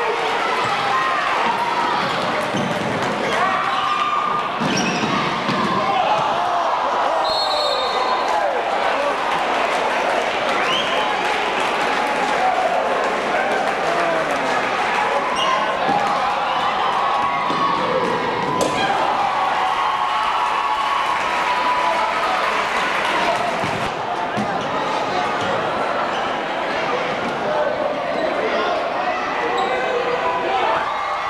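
Live sound of a basketball game in a gym: a crowd talking and calling out the whole way through, with a basketball bouncing on the wooden court floor.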